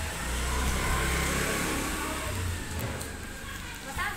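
A motor vehicle passing close by, a low rumble with a rushing noise that swells in the first second and then fades away.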